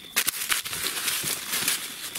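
Dry leaf litter crackling and rustling as a released nine-banded armadillo scrambles off through it, starting about a quarter second in as a quick, irregular patter of rustles.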